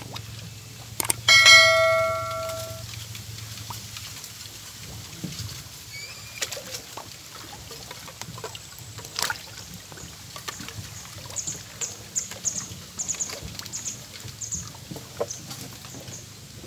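Subscribe-button sound effect: a click followed by a bell ding that rings out for about a second and a half. After it come faint small clicks and rustles, and faint high chirps near the end.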